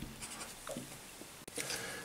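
Felt-tip pen writing on paper, faint.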